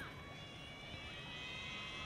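Faint, steady ambience of a floodlit rugby ground during play: a low, even hum with some faint thin high tones over it and no distinct event.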